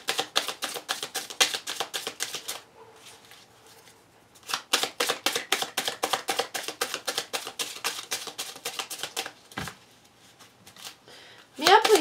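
A deck of cards being shuffled by hand, with quick card-on-card slaps about five a second. The shuffling comes in two runs with a pause of about two seconds between them. A voice starts speaking near the end.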